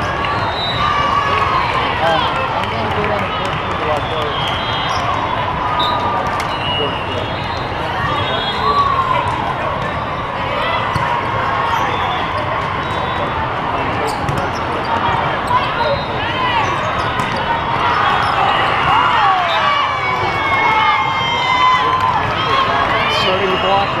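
The din of a busy volleyball hall: many overlapping voices of players and spectators from the surrounding courts, with volleyballs being hit and bouncing as scattered sharp knocks throughout.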